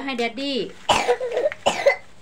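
Speech broken by short, harsh coughs: three sudden loud bursts, one at the start, one about a second in and one near the end.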